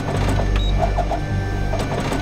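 Office printer running a print job, printing photos: a low steady hum under a mechanical clatter, with a brief rising whine about halfway in as a sheet feeds through.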